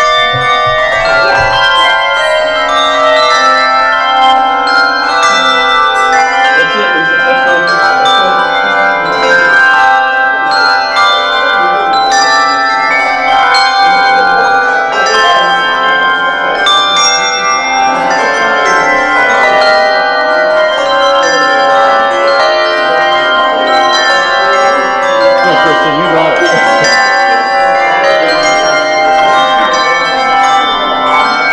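Many brass handbells rung at once by a group of ringers practising ringing and damping: a continuous, dense wash of overlapping bell tones, with new strikes coming all the time and notes cut short as they are damped.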